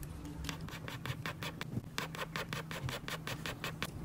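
Eyebrow pencil scratching across a practice face pad in quick, short, feathery strokes, several a second, as brows are drawn in.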